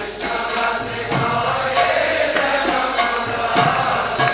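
Devotional kirtan: a chanting voice over a microphone, with a long sung note sliding down in the middle, over the regular beat of a mridanga drum and a small hand gong struck with a stick, whose metallic ringing carries high above the voice.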